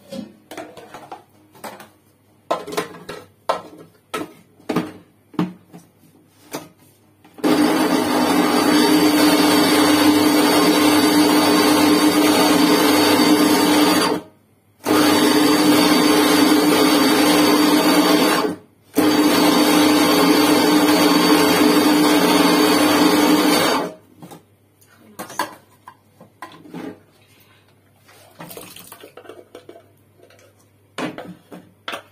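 Electric blender running in three bursts of about six, four and five seconds, with two short stops between them, puréeing tomatoes. Light knocks and clicks come before and after the blending.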